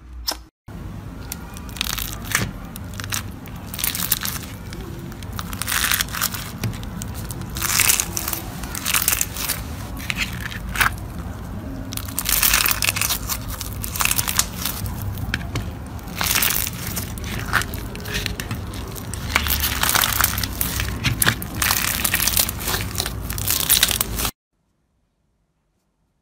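Slime being squeezed, pressed and pulled apart by fingers, giving repeated crackling, crunching bursts every second or so.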